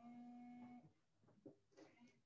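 Near silence, with a faint steady hum of one held pitch lasting under a second at the start, then a few soft ticks.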